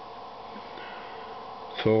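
A steady faint hum with background room noise, a man's voice starting again near the end.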